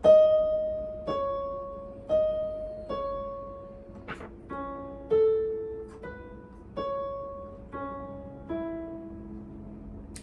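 Piano keys played one at a time, a slow single-note melody of about ten notes, each struck and left to fade. The notes are the number sequence 7676645661 turned into scale degrees of a major scale. There is one short click about four seconds in.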